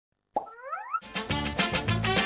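A cartoon-style pop followed by a short rising whistle-like glide, then an upbeat theme jingle with a steady drum beat starting about a second in.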